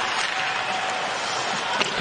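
Steady background noise of a live ice hockey broadcast: an even rush of rink and arena sound while play goes on, with no commentary.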